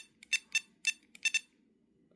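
ToolkitRC M7 charger giving short electronic beeps, one for each press of its scroll button as the charge current setting steps up by 0.1 A. There are about five beeps at roughly three a second, stopping about a second and a half in.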